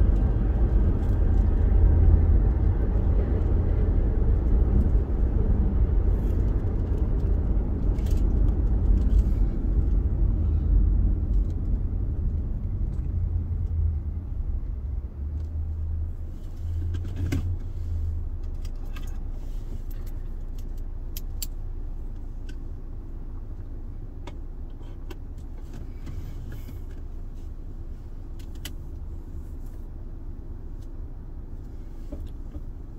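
Car road and engine noise heard from inside the cabin: a low rumble while driving that fades over the second half as the car slows and stops at a red light, leaving a quieter idle hum with a few light clicks.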